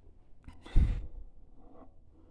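A man's short sigh or exhale close to the microphone, about a second in, fading quickly, with a few faint clicks just before it.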